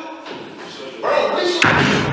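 A single heavy thud about one and a half seconds in: a body hitting the bunk as a man is yanked by his feet and flipped backwards.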